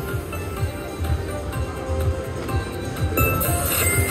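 Rakin' Bacon Deluxe slot machine playing its jackpot pick-bonus music with a steady pulsing beat. A bright sparkling chime comes in near the end as a picked piggy bank turns over to show a Grand jackpot symbol.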